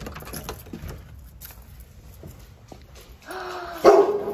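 Keys jingling and clicking in a front-door deadbolt lock as it is unlocked, a few sharp small clicks. Near the end a dog starts whining, a high steady whine that gets suddenly louder at the very end.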